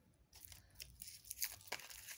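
Dry crackling and rustling from something being handled by hand, starting about a third of a second in as a quick run of small crinkly clicks.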